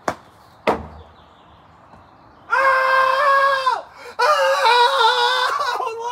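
A golf club strikes a ball with a sharp click, followed about a second later by a second knock. Then a child gives two long, loud, high-pitched yells.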